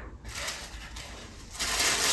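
Quiet room tone, then about one and a half seconds in, a rustle of paper or card packaging as it is handled.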